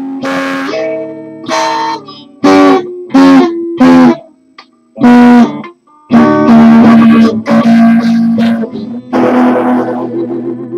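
Solid-body electric guitar playing a country song's intro: single chords struck one after another with short gaps, a break of about a second and a half in the middle, then steadier strumming.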